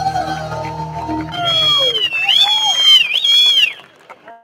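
Live band playing the end of a song. A little over a second in, the low instruments drop out and a high violin line slides and bends on its own, then stops just before the end.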